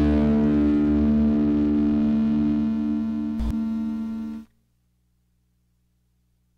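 A final electric guitar chord ringing out and slowly fading. A thump comes about three and a half seconds in, and a second later the sound cuts off suddenly, leaving near silence with a faint hum.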